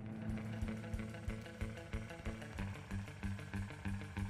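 Quiet background music with a steady beat.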